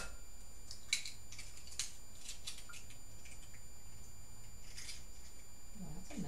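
An eggshell cracking sharply at the start, then small scattered clicks and scrapes of the shell halves as the yolk is passed between them to drain off the white.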